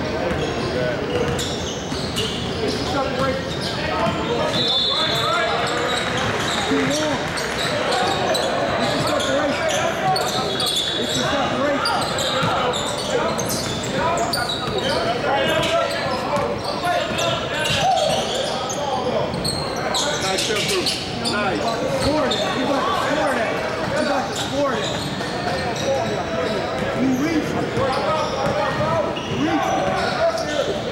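Basketball being dribbled and bounced on a hardwood gym floor, short sharp knocks scattered all through, under indistinct shouts and chatter from players and onlookers, echoing in a large gym.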